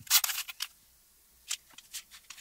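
Paper and hand tools handled on a cutting mat: a quick cluster of short rustles and taps in the first half second or so, then a single sharp tap about a second and a half in as a metal ruler is set down on the paper.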